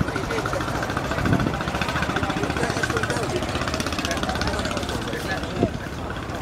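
An engine idling steadily, with people talking in the background.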